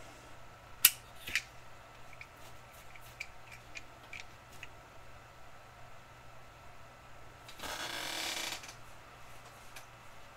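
Faint small handling sounds: two sharp clicks about a second in, scattered light ticks, and a hissing noise lasting about a second near the end.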